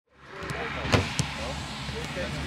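Outdoor football training-session ambience fading in, with distant voices and two sharp knocks close together about a second in.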